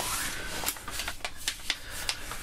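Paper booklets and cards rustling as they are pulled out of a gig bag pocket, with scattered sharp handling clicks.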